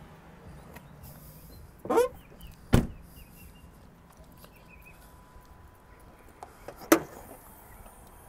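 A pickup truck's door shutting with a thud about three seconds in, just after a brief squeak, then a sharp clack near the end, the loudest sound.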